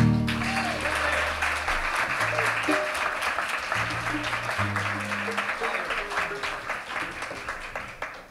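An audience applauds as the final chord of acoustic guitars and upright bass rings out in the first couple of seconds. The clapping then slowly thins out.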